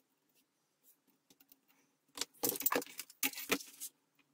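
A steel ruler being shifted and set back down on a board: a few faint ticks, then about two seconds of clattering and scraping with metallic clinks.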